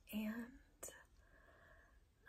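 A woman's voice saying "and", then a short click a little under a second in and a quiet, breathy pause.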